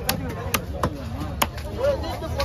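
Heavy cleaver chopping diamond trevally into bone-in chunks on a wooden block: four sharp chops at uneven intervals, with voices in the background.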